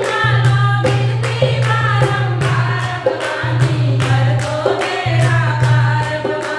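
A group of women singing a Hindi devotional bhajan together, with rhythmic hand-clapping and a dholak drum keeping a steady beat.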